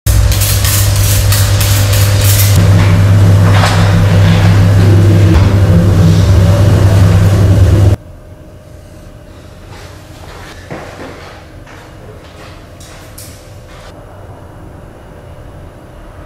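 A trigger spray bottle spritzing glass several times in quick succession over a loud, steady low hum. The hum cuts off suddenly about halfway through, leaving faint room tone with a few light clicks.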